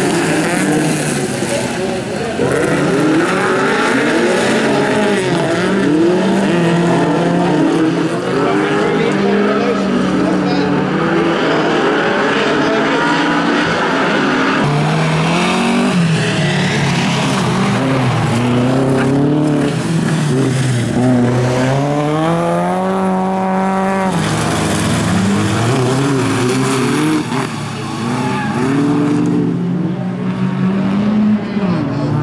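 Several bilcross cars' engines running at high revs, their pitch rising and falling as they accelerate and lift through corners. About three quarters of the way through, one engine climbs steadily in pitch for a few seconds, then drops off suddenly.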